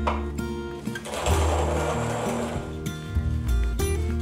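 Hand-cranked wooden-box coffee mill grinding beans for about two seconds, starting about a second in, over soft background music.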